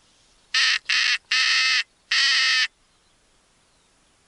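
Four loud, harsh crow caws in quick succession, the first two short and the last two longer.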